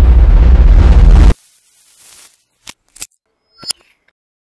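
Loud, deep rumbling boom effect that cuts off suddenly about a second in, as the channel logo appears. It is followed by a few faint short clicks.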